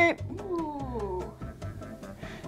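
A soft vocal sound that slides down in pitch over about a second and a half, fading near the end.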